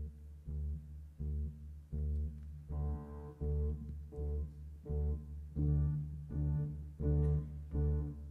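Live band playing an instrumental passage: a low bass line repeats short, accented notes about every two-thirds of a second, and about three seconds in more instruments join above it, filling out the sound without singing.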